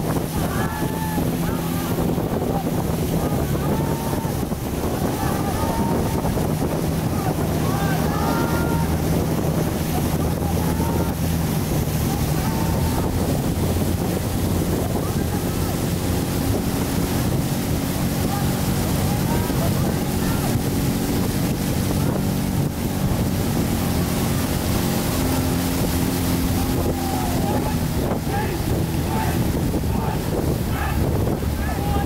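A boat engine running steadily at an even pitch, with voices shouting and calling over it, most in the first ten seconds and again near the end. Wind buffets the microphone.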